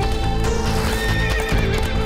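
Cartoon sound effects of a horse's hoofbeats and a whinny about a second in, over background music.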